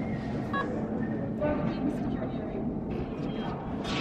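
Airport terminal hall ambience: indistinct background voices and a general steady hubbub, with a short electronic beep about half a second in.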